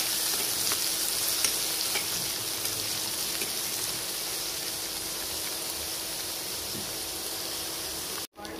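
Chopped onions sizzling in hot oil in a pan while a steel spoon stirs them, with a few faint scrapes and taps of the spoon on the pan. The sizzle slowly quietens.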